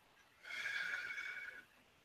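A man's long, breathy exhalation lasting about a second, starting about half a second in.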